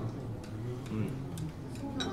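A few light clicks of tableware, such as glasses, bowls and chopsticks, over a low murmur of voices at a restaurant table.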